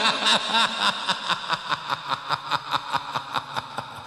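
A man's theatrical horror-villain laugh, a long run of "ha"s repeating about four to five times a second.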